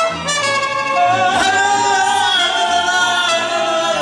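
A live mariachi band, with violins and trumpets, accompanying a man singing through a microphone. From about a second in he holds one long, wavering note.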